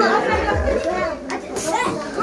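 Children's voices chattering and calling out close by, with music playing underneath.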